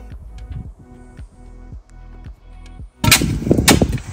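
Background music with a steady beat, then, about three seconds in, several loud sharp strikes of a spade being driven into stony, gravelly soil while digging.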